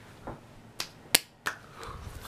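Three sharp clicks about a third of a second apart, the middle one loudest, from hands working close to the camera.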